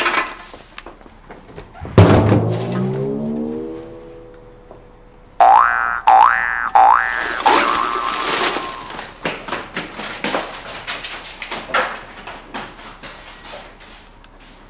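Comic sound effects: a sudden hit about two seconds in, as the door shuts, followed by a wobbling cartoon boing that fades over a couple of seconds. About five seconds in comes a comic music sting with three quick rising glides, then light plucked comic notes that thin out.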